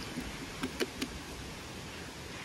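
A few faint clicks and taps, mostly in the first half, as a small geocache container is slid back into a crack in a weathered wooden log, over a steady low outdoor hiss.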